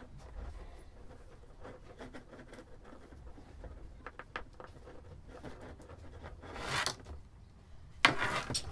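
Faint handling of a walkie-talkie's plastic casing and rubber keypad as the buttons are pressed back into place: small clicks and rubbing, with one louder scrape a little before the end.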